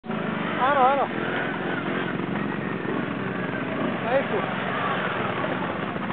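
CF Moto X8 ATV's 800 cc V-twin engine running at a steady pace, with no clear revving.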